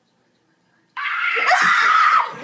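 Near silence, then about a second in a sudden loud scream breaks out and carries on: a boy screaming in fright at the jump scare of a maze game on a tablet.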